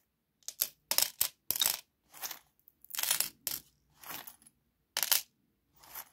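Small metal charms clinking and jingling in short, irregular bursts as a hand rummages through them in a fabric pouch.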